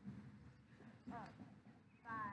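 Faint voice: one short falling syllable about a second in, over a low steady rumble.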